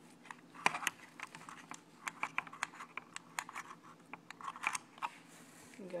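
Phillips screwdriver turning a small screw out of a Traxxas Rustler's plastic chassis: a run of irregular small clicks and scrapes, with the loudest couple of clicks just under a second in.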